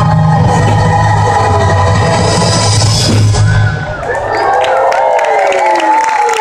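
Loud show music with a heavy bass line ends about three and a half seconds in, and a crowd breaks into cheering and whoops as the show finishes.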